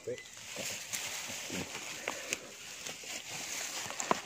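Short, faint bits of a man's speech over a steady outdoor hiss, with scattered small clicks and rustles.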